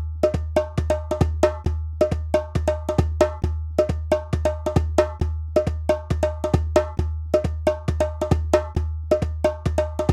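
Drum music: a steady, repeating rhythm of sharp, clacking strikes with a short ring, over a deep low beat about two and a half times a second.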